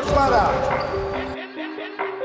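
A man calling out over the thuds of a basketball bouncing on a gym floor, then background music of short repeated notes takes over about a second and a half in.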